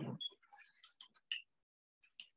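A handful of faint, short ticks and clicks, bunched in the first second and a half: a pen stylus tapping on a tablet screen.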